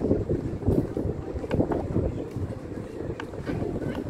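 Wind buffeting a handheld phone's microphone: an uneven low rumble that rises and falls in gusts.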